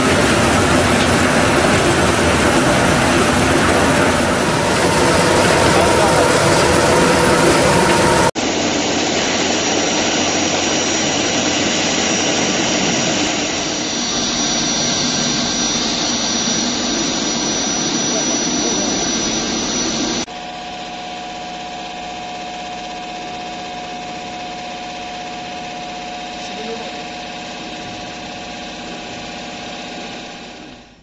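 Cocoa processing machines running, in three takes. First a cocoa bean peeling and winnowing machine runs loudly for about eight seconds. Then comes a steady grinding noise with a thin high whine from a cocoa powder grinder, and from about twenty seconds in a quieter steady hum with a held tone from a hydraulic cocoa butter press.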